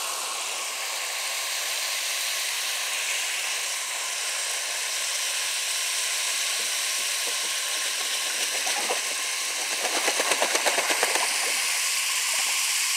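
Garden hose spray nozzle hissing steadily as its spray of water patters into a plastic wading pool. A brief rapid run of splashy pulses comes near the end.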